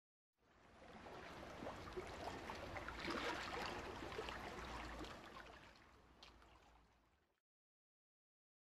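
Faint running water, an even wash with fine clicks through it, fading in at the start and fading out shortly before the end.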